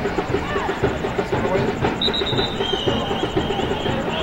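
Background music with a fast, steady beat, with a high held tone that starts about halfway through and steps down in pitch.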